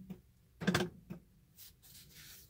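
BMW E46 central locking door-lock actuators cycling once briefly, about two-thirds of a second in, with a smaller sound shortly after: the car confirming that the key fob has been programmed.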